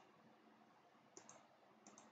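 Near silence broken by two pairs of faint computer clicks, one about a second in and one near the end, as a copied table is pasted into a document.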